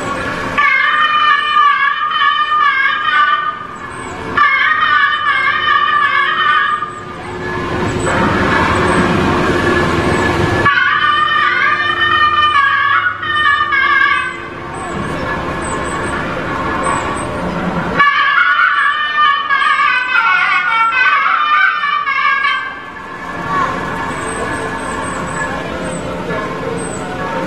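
South Indian temple music: a loud reed pipe of the nadaswaram kind plays ornamented melodic phrases, which several times give way to stretches of dense drumming, with faint regular high ticks keeping time.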